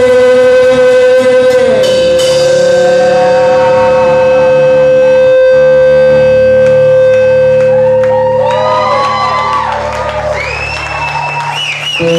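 Live rock band music: one long held note for about eight seconds, then a run of sliding, bending higher notes as the sound thins out.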